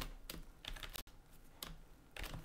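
A few separate keystrokes on a computer keyboard, typed slowly with pauses between them.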